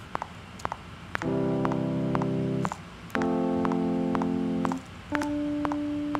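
A software electric piano (Logic's EVP88) playing three sustained chords, each held about a second and a half, the third thinner and nearly a single note. Under them a recording metronome clicks about twice a second.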